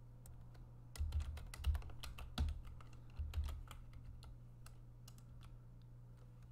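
Computer keyboard typing: a quick run of keystrokes starting about a second in, then a few scattered single key clicks.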